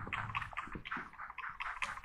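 Plastic trigger spray bottle pumped rapidly, a quick run of short, quiet spritzes misting water onto compost in seed-tray cells.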